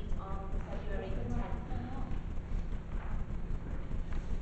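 A woman speaking into a handheld microphone over a steady low crackling rumble.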